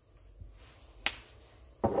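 A single sharp click about a second in, from handling a small spice shaker jar, with quiet around it.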